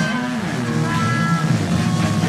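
Live rock band playing an instrumental passage led by guitar, with held notes and a bending low note early on.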